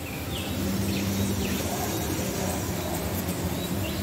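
Honeybees buzzing in a steady hum, with a few short bird chirps now and then.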